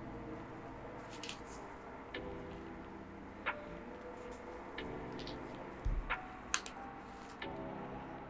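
Soft background music with sustained chords, overlaid by a few small, sharp, irregular clicks of crimped pin terminals being pushed into a plastic three-pin servo-style connector housing.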